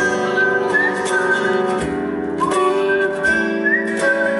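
A live song performance: guitar accompaniment under a high, wavering melody line that the singer produces into the microphone.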